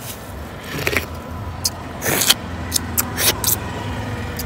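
Steady low hum of road traffic, with a few sharp knocks and clicks about two and three seconds in.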